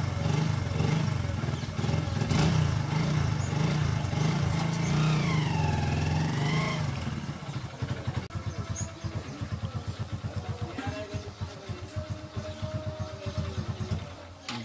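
Motorcycle engine running loudly at raised revs for about seven seconds, then dropping to an idle with a fast, even putter.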